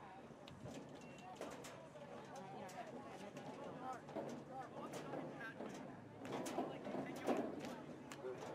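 Voices of players and spectators calling out across an outdoor soccer field, with no clear words, getting louder near the end. Scattered sharp knocks run through it.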